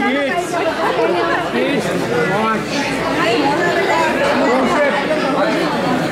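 Chatter of many people talking at once, overlapping voices with no single speaker standing out.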